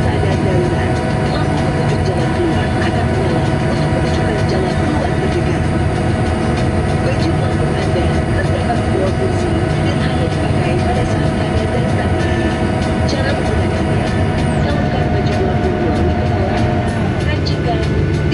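Steady drone inside a Boeing 737-800 airliner cabin, from the engines and air conditioning: a low rumble with a few steady tones above it.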